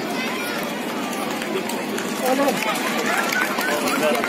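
Outdoor crowd chatter, several voices talking over one another, with one or two voices standing out more clearly and a little louder in the second half.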